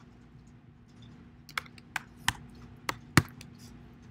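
A handful of sharp computer keyboard keystrokes, about five spaced irregularly through the second half, over a faint steady hum.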